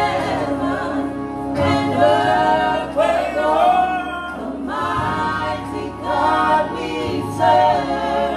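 A gospel praise and worship team of women's and men's voices singing together into microphones, amplified through the church sound system, with sung notes that rise and fall in phrases of a second or two.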